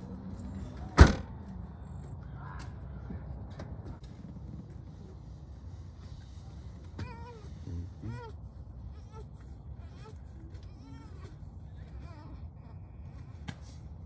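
A GMC Yukon SUV's door slams shut once, sharp and loud, about a second in, over a low steady rumble.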